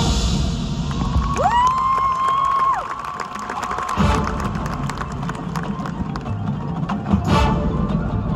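High school marching band playing while the audience cheers, with one long whistle that rises, holds and drops away between about one and three seconds in. About four seconds in, low drums and brass come back in.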